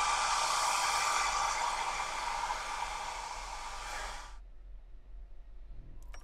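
Handheld hair dryer blowing with a steady rushing whir that cuts off suddenly about four seconds in, leaving a faint low hum.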